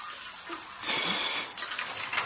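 Micro slot car running on the track, its tiny electric motor giving a faint hissing whir, with a brief louder whoosh about a second in as it passes close.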